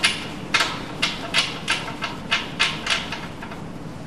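Light metallic clicks, unevenly spaced at roughly three a second, as a steel adapter is spun by hand onto the threaded end of a MAN B&W diesel engine's cross tie rod, over a faint steady background noise.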